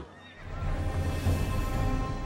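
Dramatic film score with a deep low rumble that swells in about half a second in, and a horse neighing over it.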